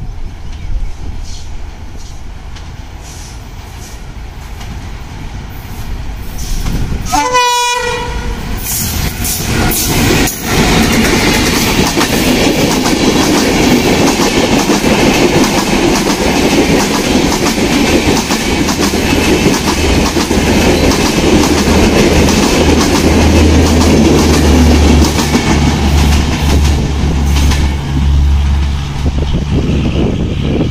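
A diesel locomotive hauling a passenger train approaches and passes close by, growing louder over the first several seconds, with a short horn blast about seven seconds in. The coaches then run past with a steady rumble and wheels clattering over the rails, and a deep hum comes in for the last few seconds.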